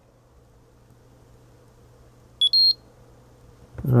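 Peak Atlas DCA Pro component analyser giving a short two-note electronic beep, a lower note then a higher one, about two and a half seconds in, as it finishes identifying the transistor under test. A faint low hum lies underneath.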